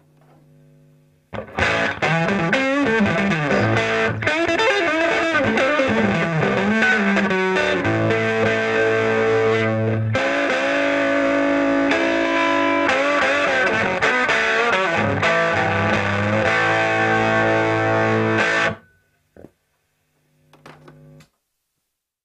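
Electric guitar, a Lag Imperator 3000 with P94 pickups plugged straight into a hand-wired Fender 5E3 Tweed Deluxe clone valve amp with a Jensen P12R speaker. After a moment of faint hum, it plays a phrase full of bends and slides, then held chords. The playing stops abruptly a few seconds before the end, followed by a couple of small handling sounds.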